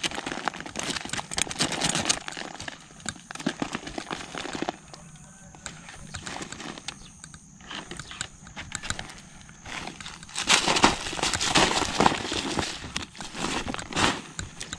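A metal hook and a wire-mesh snake trap being handled: irregular clicking and rattling as the hook scrapes and knocks against the cage, with rustling of the plastic sack beneath. It eases off for a few seconds midway and grows busier again near the end.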